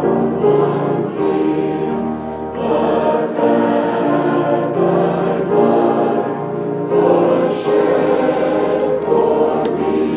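A church congregation singing an invitation hymn together, many voices holding long notes in unbroken phrases.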